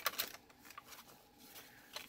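Faint rustling and handling of heavy paper pages as a junk journal's pages are turned, with a few light paper clicks in the first half second.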